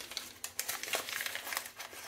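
A small paper sachet of baking powder crinkling as it is handled and opened, a run of irregular light crackles.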